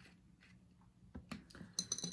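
Near silence at first, then a few small clicks and a brief high metallic clink near the end: a T5 Torx screwdriver coming off a freshly tightened screw in a metal SSD enclosure tray and being put down.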